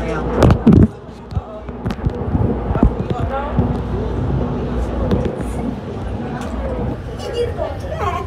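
Steady low rumble of a moving people-mover tram heard from inside the car, with indistinct voices and a few loud sharp knocks in the first second.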